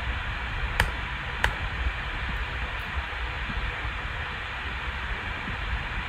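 Two sharp clicks of a computer mouse or keys, about a second in and two-thirds of a second apart, over a steady hiss of microphone noise.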